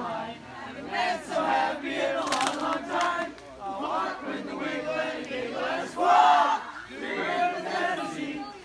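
A large crowd of children singing a camp song together, shouting the lyrics out in phrases, loudest about six seconds in.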